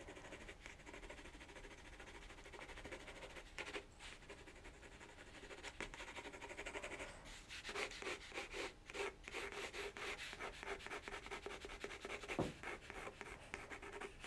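Faint scratchy rubbing of a water-soluble pencil held on its side, shading back and forth across textured watercolour paper. The strokes get quicker and a little louder about halfway through.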